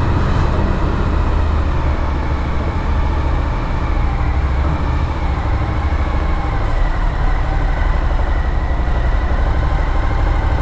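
Motorcycle engine running at low speed as the bike rolls slowly along a ferry's enclosed vehicle deck, a steady low rumble.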